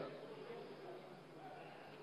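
Faint murmur of voices in a large hall over a steady low hum.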